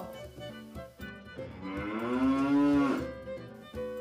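A cow mooing: one long moo that starts about a second in and lasts about two seconds, over soft background music.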